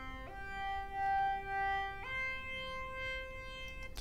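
Synthesizer lead patch (Logic Pro X's Retro Space Lead) holding sustained notes, stepping up in pitch shortly after the start and again about halfway. Its level swells twice as a Channel EQ mid-band boost is swept upward through its harmonics.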